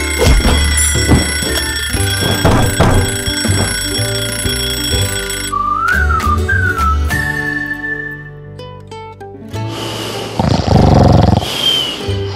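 Cartoon soundtrack: music with an alarm clock ringing steadily and a run of thumps for about the first five seconds, then a whistle that slides up and down. Near the end comes a loud, rough burst of sound.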